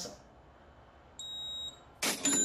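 PagBank Moderninha X card terminal giving one high-pitched electronic beep about half a second long, a little past the middle, signalling that the card payment has been approved.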